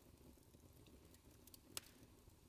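Near silence: faint room tone, with one small click shortly before the end.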